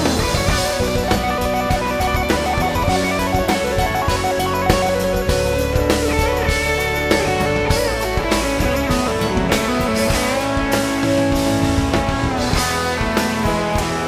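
Rock band playing an instrumental passage live: electric guitar leading over a drum kit, with no singing.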